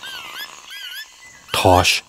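Bird calls: two short phrases of whistled notes that swoop up and down, one after the other, in the first second.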